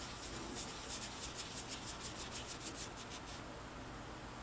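A cotton cloth is rubbing quickly back and forth over the black enamel finish of a Singer 221 Featherweight sewing machine, buffing the haze of cleaner wax off it. The strokes are faint, about six a second, and stop about three and a half seconds in.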